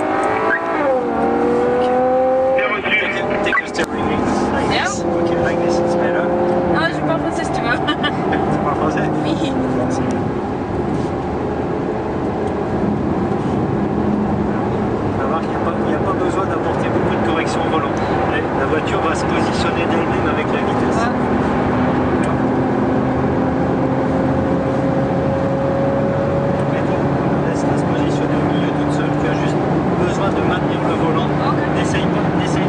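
Ferrari FF's V12 engine heard from inside the cabin, revving up and dropping back at each upshift several times in the first few seconds. It then settles into a steady note that climbs slowly near the end as the car gathers speed.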